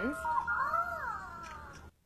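Fingerlings unicorn finger toy giving a cute electronic vocal reaction from its speaker: one squeaky pitched call that rises and then falls in pitch and fades away, the kind of reaction it makes when its head is tapped or petted.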